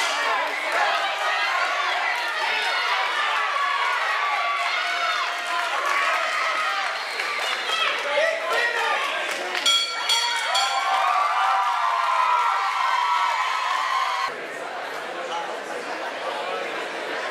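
Fight crowd shouting and cheering, many voices overlapping, with a quick run of sharp knocks about ten seconds in; the noise drops off suddenly shortly before the end.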